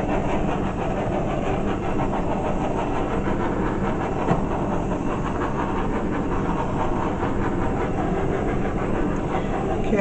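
Handheld gas torch running with a steady, even hiss-roar of flame, played over wet acrylic pour paint to bring the cells up round.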